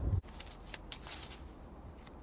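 Scissors snipping bay leaves off a bay laurel hedge: a quick run of crisp snips and leaf rustles in the first second and a half, after a brief low sound cuts off at the very start.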